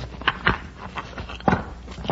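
Old-time radio drama sound effects: a few irregular knocks and scrapes, the loudest about half a second and a second and a half in, over a low background hum.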